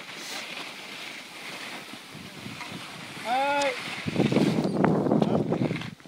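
Wind buffeting the microphone of a camera carried by a moving skier, over the hiss of skis sliding on packed snow. A short shouted call about three seconds in, then louder rough buffeting and scraping for the last two seconds.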